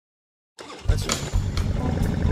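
Dead silence, then about half a second in a motorcycle engine comes in, running loud with a heavy low rumble.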